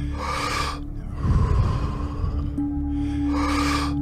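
A person's deep, forceful breaths in the paced rhythm of Wim Hof breathing: two loud breath sounds about three seconds apart, over steady ambient background music.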